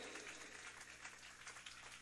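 Near silence: faint room tone, with the echo of the last spoken words dying away at the start.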